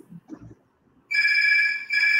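Electronic phone ringtone: a steady chime of several stacked tones, starting about a second in and sounding twice in quick succession.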